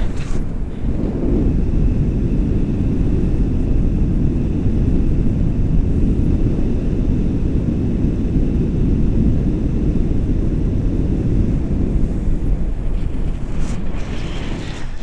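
Airflow buffeting an action camera's microphone in flight under a tandem paraglider: a loud, steady low rumble of wind, dipping briefly just after the start.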